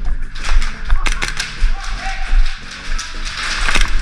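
Background music with a steady bass beat, over sharp cracks of airsoft guns firing at close range.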